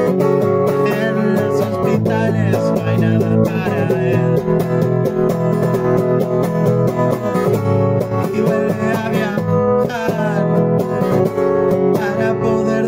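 Guitar-led music playing steadily.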